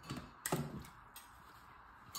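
Small toy figure dropped into an empty clear plastic storage box, landing on the plastic bottom with a sharp knock about half a second in. Two lighter taps follow as it settles.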